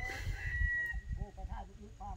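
A rooster crowing: one long, held call that fades out about a second in, over a low rumble.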